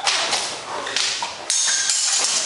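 Blunt steel longswords clashing: several sharp blade strikes, the loudest about one and a half seconds in, leaving a metallic ringing.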